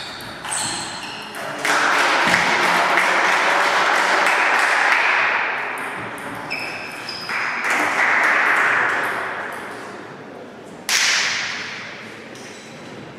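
Table tennis rally: the ball clicks sharply off paddles and table many times. Two long swells of loud rushing noise lie under the clicks, and a sudden loud burst of noise comes near the end.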